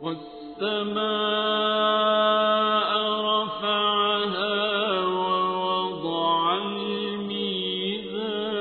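Melodic Quran recitation: a single voice chanting in long, drawn-out held notes, with slow ornamental turns in pitch between them.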